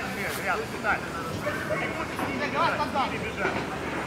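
Men's voices shouting and calling out across a football pitch in short bursts, several times, over a steady low background rumble.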